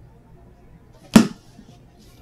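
A hardcover Bible snapped shut in the hands: one sharp clap a little over a second in, dying away quickly.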